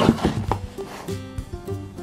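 Background music with a melody of held, stepping notes, and a brief rustle and knock near the start as a cardboard box is handled.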